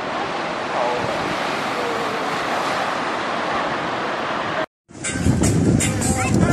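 Ocean surf washing onto a sandy beach with wind on the microphone, a steady noise that cuts off abruptly about four and a half seconds in; after a moment of silence, people's voices and chatter follow.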